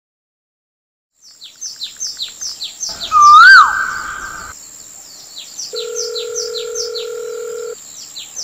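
Birds chirping in quick repeated calls. About three seconds in, a loud swell with a rising-then-falling tone cuts off sharply. Near the end a steady telephone tone sounds for about two seconds.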